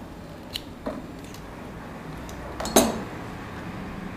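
Kitchen utensils clinking against a frying pan and counter: a few light clicks, then one louder clack about three quarters of the way through, as metal tongs are handled and set down.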